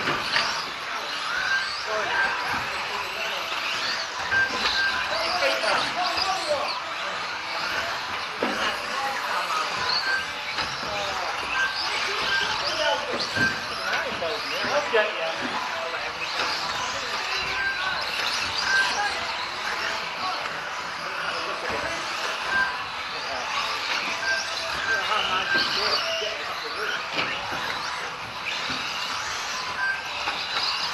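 Indistinct voices of people talking in a large hall, with short high beeps every few seconds.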